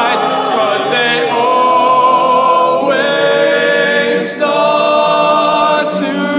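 Male a cappella group singing sustained chords in a slow ballad, moving to a new chord every second or two, with a tenor soloist over the top.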